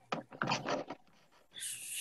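A few short, soft clicks and rubbing noises picked up by a video-call microphone, then a brief hiss like an intake of breath about a second and a half in, just before speech starts.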